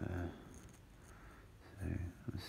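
Speech only: a man's drawn-out "um" fading out in the first moment, a quiet pause of room tone, then his voice starting again near the end.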